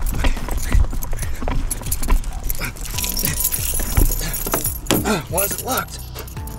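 A bunch of car keys jangling and clicking in a hand, over background music with a steady bass line.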